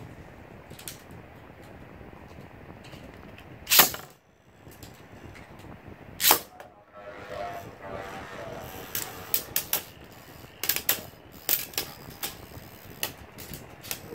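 Two Beyblade spinning tops are launched into a plastic stadium, with two loud bursts about four and six seconds in. From about eight seconds on, the tops clack against each other and the stadium in many quick, sharp, irregular clicks as they spin.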